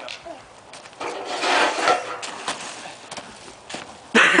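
Feet and a body scuffing and skidding through loose wood-chip mulch, a rough crunching scrape that swells about a second in and fades out after two seconds, with a few sharp crunches around it.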